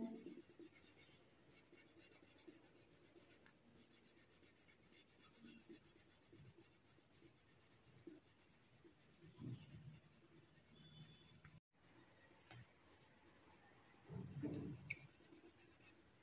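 Faint, quick, even back-and-forth strokes of colouring on paper as a drawing is filled in with colour.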